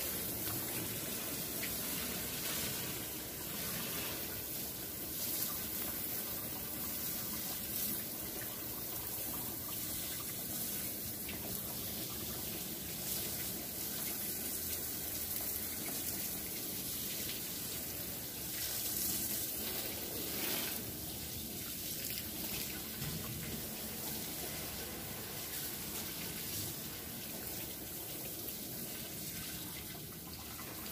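Water from a garden hose spraying steadily onto a car's windshield, roof and hood, rinsing off a coating of volcanic ash.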